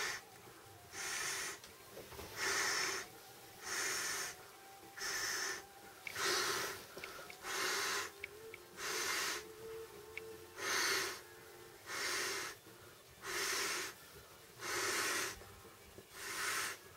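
Person inflating an Intex air bed by mouth at its valve: a rush of breath about every one and a half seconds, eleven or so in a steady rhythm.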